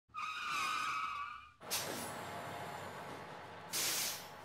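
Vehicle sound effects: a wavering tyre squeal for about a second and a half, then a sudden rush of noise that falls in pitch, then a short sharp hiss like an air brake near the end.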